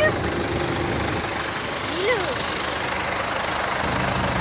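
Mitsubishi Fuso Canter light trucks' diesel engines idling with a steady low hum. A short voice rises and falls about two seconds in.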